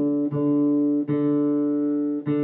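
Acoustic guitar's open D string plucked twice, each note ringing on, as it is tuned up from C-sharp to D with its tuning peg.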